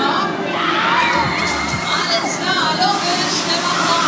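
Riders on a Beach Jumper fairground ride shouting and screaming together as the gondolas swing, over a steady low hum.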